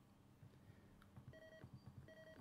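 Near silence broken in the second half by two faint, short electronic beeps, each a steady tone lasting about a third of a second.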